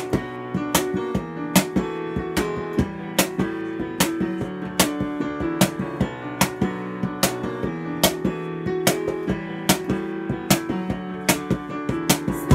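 Instrumental break of a pop song played on a digital piano, with chords and a moving bass line, while a cajón beats out a steady rhythm of sharp slaps.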